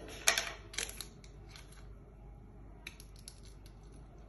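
Short, sharp handling noises close to the microphone: a loud scratchy burst about a third of a second in, a smaller one at about one second, then a few light clicks near the end.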